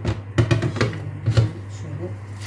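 Several short knocks and clatters as a plate and a plastic bottle are handled on a stainless-steel sink drainer, over a steady low hum.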